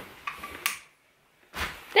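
A few short, faint clicks and rustles, then a moment of dead silence where the recording cuts, and one short burst of noise just before speech resumes.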